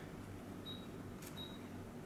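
Android car head unit's touchscreen giving two short high beeps as on-screen menu buttons are tapped, with a soft click just before the second beep. A faint low hum runs underneath.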